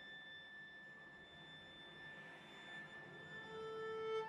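Bowed string quintet playing very softly: thin, pure-sounding high tones are held steady. Near the end a lower bowed note enters and swells.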